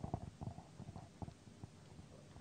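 Handling noise from a handheld microphone as it is passed from one person's hand to another: a string of soft, irregular low bumps and rumbles.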